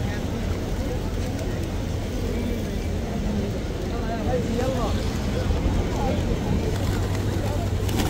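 Outdoor ambience: a steady low rumble, with people's voices faintly in the background about halfway through.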